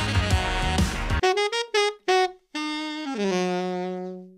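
A band playing funk with a saxophone lead and keyboard, cut off after about a second. Then a lone saxophone plays a funk lick: a few short detached notes, then two longer notes stepping down, ending on a low held note that fades away.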